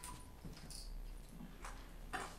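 Faint room noise after speech stops: a low rumble with a brief soft rustle and a short light knock.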